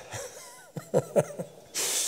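A man chuckling softly into a lectern microphone: a few short, quick breathy pulses about a second in, then a breathy exhale near the end.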